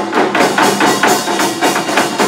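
Korean pungmul percussion ensemble playing a fast, steady rhythm: bright metallic strikes from small hand-held gongs (kkwaenggwari) over drum beats from a barrel drum (buk) and a two-headed drum.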